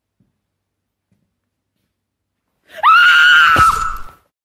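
Near silence, then about three seconds in a woman's loud, high scream that rises sharply at the start, holds steady for about a second and breaks off.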